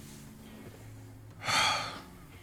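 A single sharp breath from a person, about half a second long, a little after one second in, over a faint steady low hum.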